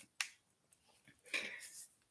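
A single sharp mouth click, then about a second later a short, soft breath drawn in, in a pause between spoken sentences.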